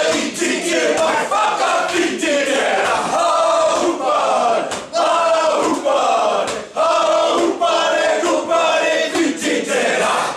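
Group of men performing a haka: shouted, chanted lines in unison, punctuated by sharp hand slaps on chests and thighs, in phrases with short breaks, ending in a final shout.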